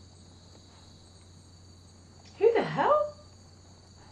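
Crickets chirping steadily in the night, with one short pitched call about two and a half seconds in that glides down and then up.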